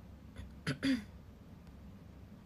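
A young woman clearing her throat once, a little under a second in: a sharp catch followed by a short voiced rasp.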